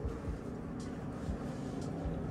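Soft footsteps and handling noise from a handheld camera carried while walking: a low rumble with dull thumps about twice a second and a couple of faint clicks.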